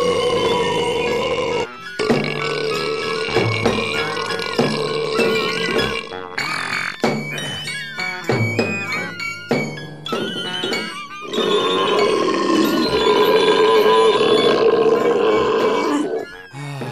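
Opera aria with orchestra in which the singer's voice is replaced by comic fart and burp noises. Long held pitched notes break off twice, with a choppy, sputtering stretch in the middle before a final long held note.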